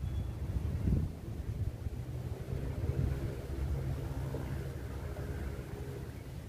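Low wind rumble on the microphone, with the faint hum of a distant vehicle engine in the middle seconds.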